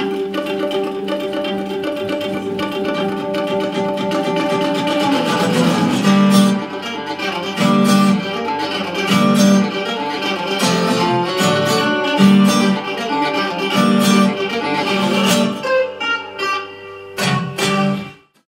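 Acoustic plucked-string music led by guitar: held notes for about five seconds, then a steady rhythmic pattern with a regular low beat, cutting off at the end.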